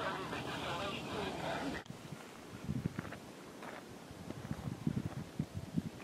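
Voices over wind noise for the first two seconds. After a sudden cut comes a quieter stretch of irregular footsteps on a loose gravel track.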